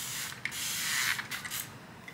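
Hand-held spray bottle misting hair in a few short hissing sprays, the longest lasting most of a second.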